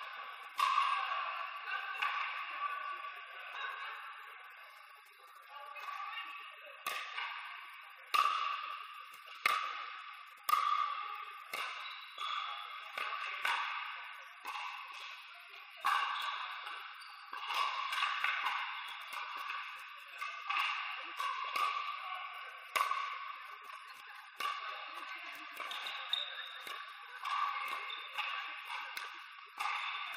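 Pickleball paddles striking a hard plastic outdoor pickleball in a rally: sharp pops at irregular intervals, each followed by a short echo from the large hall. Steady background noise of the hall runs underneath.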